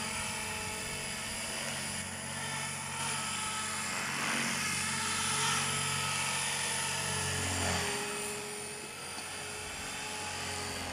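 Small radio-controlled helicopter in flight: a steady high-pitched motor and gear whine over the hum of the rotors, rising and falling a little in pitch and loudness as it manoeuvres. The pilot thinks the main blades need aligning.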